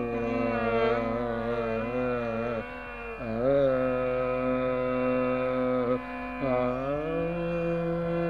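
Carnatic vocal music in raga Hindolam: a male voice sings long held notes joined by sliding ornaments over a steady drone, pausing briefly between phrases twice.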